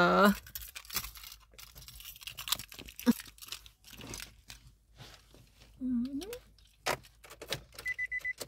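Scattered clicks, knocks and rustles of someone settling into a car's driver's seat and handling the keys. Right at the end a car's high warning chime begins beeping in short pulses.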